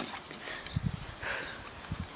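Quiet, low thuds of feet landing on a trampoline mat, two of them about a second apart.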